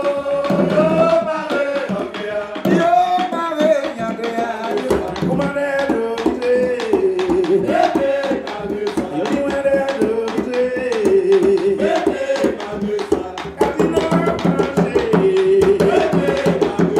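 Live bèlè music: a singer's melody over hand-played bèlè drums beating throughout.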